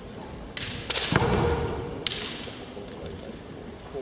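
A quick flurry of sharp cracks and a heavy thud about a second in: bamboo shinai striking in a kendo exchange and a stamping foot on the wooden floor. Another sharp hit about two seconds in trails off in the large hall.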